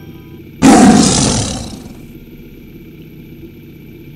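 A sudden loud roar about half a second in, fading away over about a second and a half, played as a sound effect on the channel logo, then a steady quieter background.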